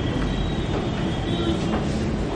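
Steady low rumble and hiss of room and recording noise in a pause between speech, with a faint steady high whine.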